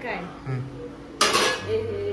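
Steel cookware clanging once, a little over a second in: a sharp metallic hit that rings briefly, with a few lighter clinks of steel utensils around it.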